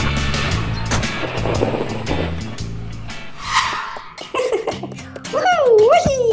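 Cartoon sound effect of a car driving off: a rushing noise over background music during the first half, followed near the end by a wavering, sliding pitched sound.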